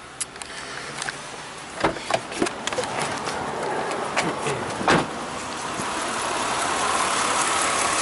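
Mitsubishi Montero Sport engine idling steadily, growing louder as the open engine bay is approached, with a few handling knocks and clicks: a sharp one about two seconds in and another about five seconds in.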